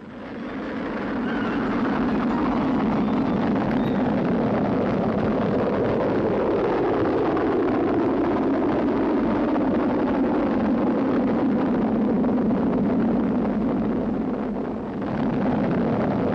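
Soyuz-U rocket's engines at liftoff: a loud, steady rumble of rocket exhaust that builds over the first two seconds, dips briefly near the end and comes back.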